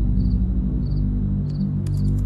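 A cricket chirping in short trills about every two-thirds of a second, three times, over sustained low background music.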